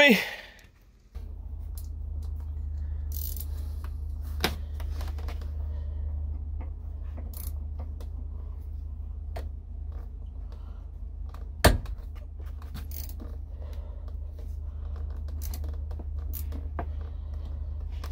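Scattered metallic clicks and clinks of a hand wrench turned on a Torx bit against a seized door hinge bolt of a Jeep Cherokee XJ, with a sharper metallic knock about two thirds of the way through. A steady low rumble runs underneath from about a second in.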